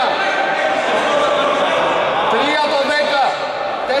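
Men's voices talking in a large gym hall, with no ball bounces or other clear sounds standing out.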